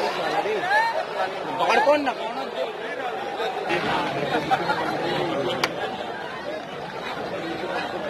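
Spectators in the stands chattering, many voices overlapping at once, with a single sharp click a little past halfway.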